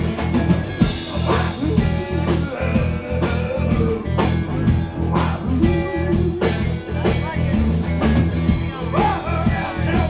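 Live blues band playing, with electric guitar, acoustic guitar, electric bass and drums. A lead line slides and bends in pitch over a steady drum beat and bass.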